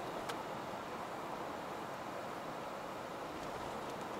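Steady road and engine noise inside the cabin of a second-generation Toyota Vellfire minivan driving along at a steady pace, its 2.5-litre four-cylinder with CVT. A single short click sounds just after the start.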